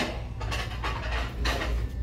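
A small wooden box being shaken to check for anything inside, giving a few light knocks and rattles over a steady low background rumble.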